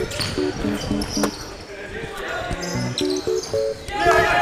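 Basketball bouncing on a hardwood gym floor as it is dribbled, with a music track playing underneath.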